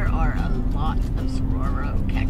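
Steady road and engine noise heard from inside a truck's cab while driving, with a voice over it.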